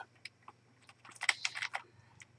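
Faint clicking of computer keyboard keys: a quick run of several presses about a second in, over a low steady hum.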